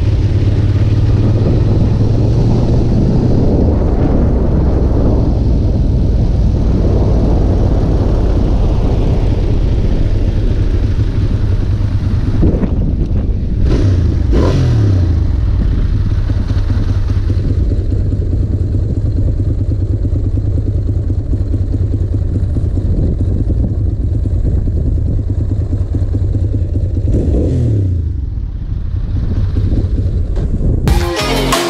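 Ducati Monster S2R 1000's air-cooled L-twin engine running under way, with wind noise on the helmet or handlebar camera that is stronger in the first half. The revs fall away twice, once around the middle and again near the end as the bike slows.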